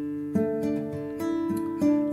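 Nylon-string classical guitar fingerpicked slowly, single notes of a D added-2nd chord plucked one after another with the thumb and fingers so that each rings into the next, a new note about every half second.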